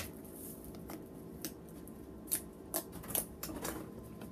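Quiet room with a few scattered light clicks and taps.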